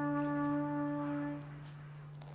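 A trumpet holds one long note over a low steady hum; the note fades out about a second and a half in, leaving faint light ticks.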